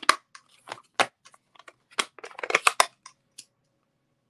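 Quick plastic clicks and taps from a clear acrylic stamp block being dabbed onto an ink pad and the plastic ink pad case being handled. The taps come thick and irregular, bunching together just before the end and stopping shortly before it.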